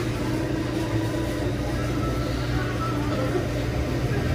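Steady electric motor hum with a low mains buzz from the drink cooler's running machinery.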